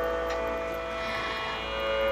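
A steady sruti drone: several held musical pitches sounding together without change, with a low hum beneath.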